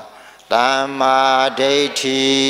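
A monk's solo voice chanting Pali in long, level-pitched phrases, starting about half a second in after a short pause.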